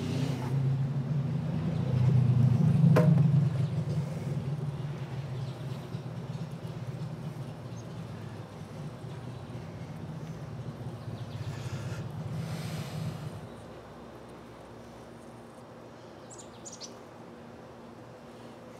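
Honeybees buzzing in flight around an open top bar hive: a steady hum that swells over the first few seconds and drops away about 13 seconds in. A single sharp tap comes about three seconds in, and a bird chirps briefly near the end.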